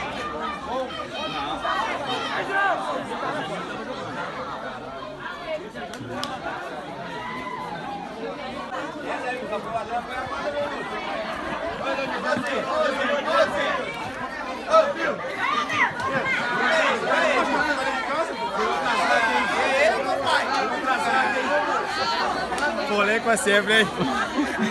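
Several men talking over one another, a jumble of overlapping chatter with no single clear voice, growing louder in the second half.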